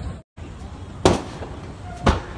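One sharp bang about a second in, from vehicles burning in a large fire, over continuous low background noise.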